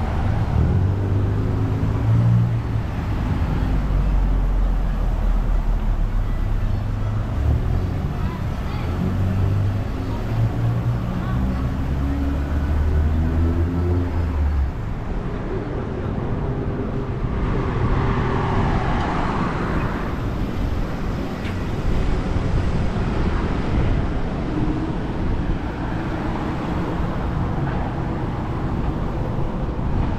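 Street traffic: vehicle engines running close by, their low tones stepping up and down for the first half. A little past halfway a vehicle passes close with a swell of tyre noise that rises and falls.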